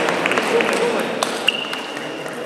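Table tennis rally: a celluloid ball makes sharp clicks off the bats and table. The loudest hit, about one and a half seconds in, rings on as a clear, high ping.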